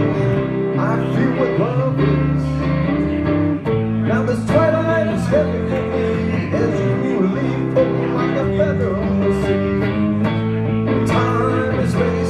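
A live song played on guitar with electric bass.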